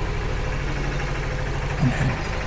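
An engine idling steadily, a low, even pulsing drone.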